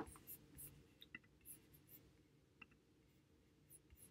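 Near silence: room tone, with a few faint small clicks.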